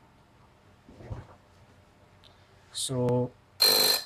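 A short, loud electronic buzz near the end: a high steady tone over a harsh noisy band, from a software-defined radio receiver's audio output. It sounds when the received signal's amplitude rises above the detection threshold, here as a hand passes between the transmit and receive antennas.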